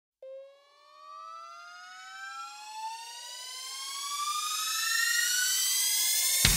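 Synthesized riser sound effect: a pitched electronic tone that glides steadily upward and slowly grows louder, starting with a short attack just after the start.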